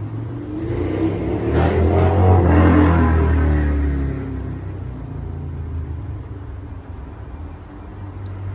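A car driving past out of sight. It grows louder for about two seconds, is loudest about two and a half seconds in, then fades away, leaving a low steady rumble.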